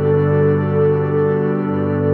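Background music: slow ambient keyboard chords, held steadily.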